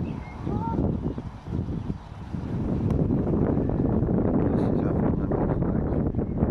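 Wind buffeting the camera microphone, a rough low rumble that grows stronger and steadier after about two seconds. A faint goose honk sounds about half a second in.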